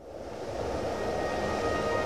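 A rushing whoosh that swells up over the first second after a sudden cut, with a low rumble and a few held tones underneath: a broadcast transition sound effect blended with music.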